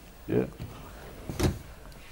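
A man says a brief "yeah", then a single sharp knock about one and a half seconds in, over quiet studio room tone.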